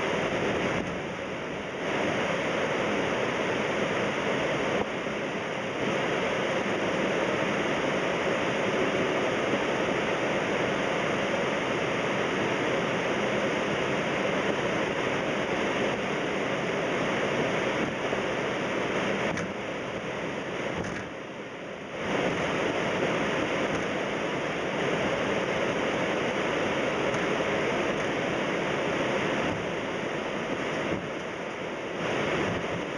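Steady rushing cockpit noise of a Boeing 767 on landing, a loud even hiss of air and engine noise, dipping briefly twice.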